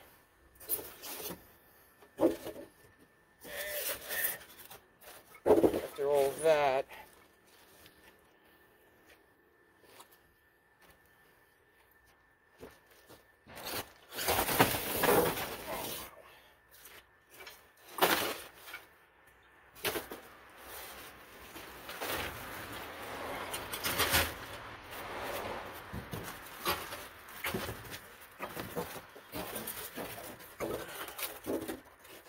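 Styrofoam packing blocks and the cardboard box being handled during unpacking: irregular rustling, scraping and rubbing, busiest in the second half.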